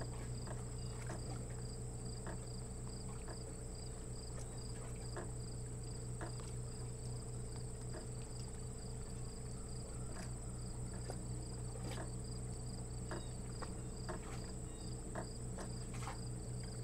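Insects singing steadily, cricket-like: a continuous high-pitched trill with an evenly pulsed chirping a little lower. Under them runs a low steady hum, with scattered faint clicks.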